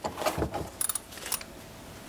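Metal socket tool handled on a steel workbench: several light metallic clicks and clinks in the first second and a half.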